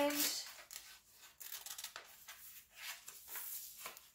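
Scissors cutting through black construction paper and white copy paper: several faint, short snips.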